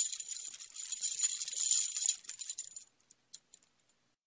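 Metal chains rattling and jangling in a sound effect, then dying away into a few separate clinks about three seconds in.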